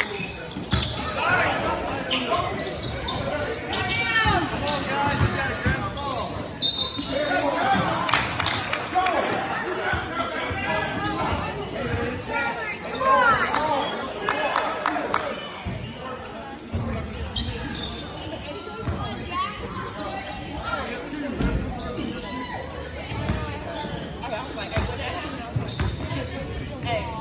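Basketball bouncing on a hardwood gym court amid the players' and spectators' voices, with the echo of a large hall.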